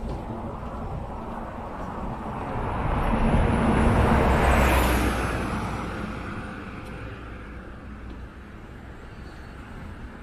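A motor vehicle passing close by on the road. Its noise swells to a peak about four seconds in and fades away by about seven seconds.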